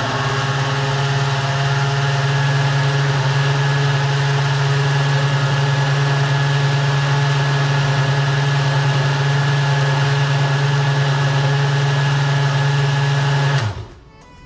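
Countertop blender motor running at a steady pitch, blending a creamy liquid rice punch mixture, then switched off abruptly near the end.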